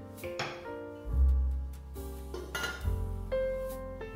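Background piano music, with two brief metallic clinks and scrapes from a stainless steel pot and its lid being set on, about half a second and two and a half seconds in.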